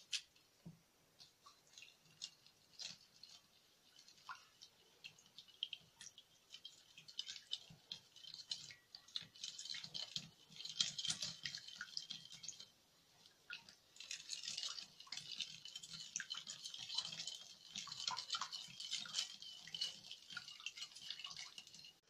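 A silicone whisk beating egg, melted butter, sugar and water together in a glass bowl: quiet, rapid liquid splashing and clicking. It starts as a few scattered taps, turns steady about a third of the way in, and pauses briefly just past halfway.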